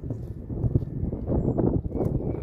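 Wind buffeting the phone's microphone outdoors: a low, uneven rumble that surges and falls.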